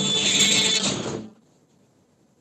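Cretan folk tune played on laouto and askomantoura bagpipe, with steady drone tones under the plucked strings; the music stops abruptly a little over a second in, leaving near silence.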